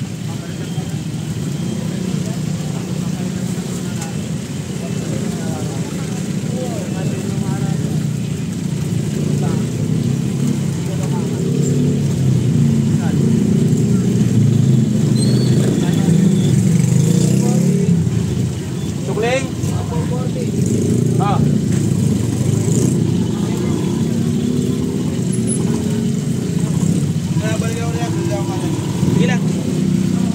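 A steady low mechanical rumble, like a running engine, under people talking in the background.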